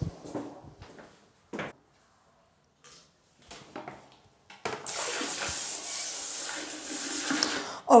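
A few faint knocks, then a newly installed handheld bidet sprayer (bum gun) spraying water into a toilet bowl: a steady, loud hiss lasting about three seconds and cutting off shortly before the end. This is the first test of the sprayer, and the pressure is on the strong side.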